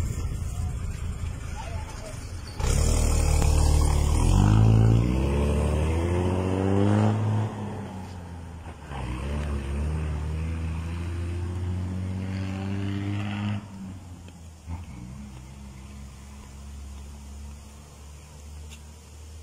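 Diesel bus engine pulling away, starting with a hiss; its pitch rises for several seconds, drops, then holds steady before falling away about fourteen seconds in.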